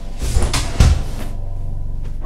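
Two heavy thuds about half a second apart in a physical scuffle, with bodies knocking against a cupboard or wall. A low steady hum follows.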